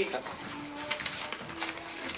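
Quiet room with faint background voices and light clicks from laptop keys and handled paper ballots. Two brief low hums come in the middle.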